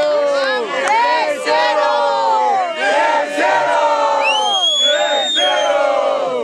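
Crowd of many voices shouting and cheering all at once in reaction to a rap-battle punchline. About four seconds in, a single high, drawn-out call rises above the crowd and holds for over a second.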